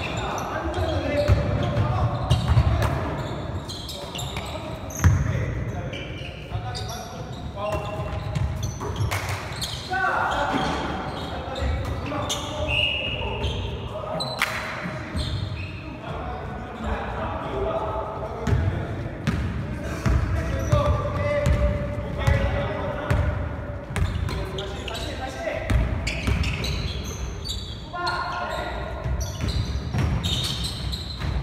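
Basketball game on a hardwood gym floor: the ball bouncing and players' footsteps, with scattered calls and shouts from the players, echoing in the large hall.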